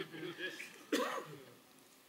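A man quietly clearing his throat, loudest about a second in and fading out by halfway through.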